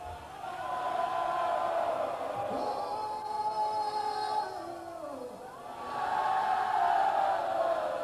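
Several voices singing together in long, drawn-out notes, swelling twice.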